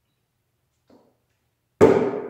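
A stainless steel travel mug set down hard on a work cart near the end: one sharp knock that rings on for most of a second.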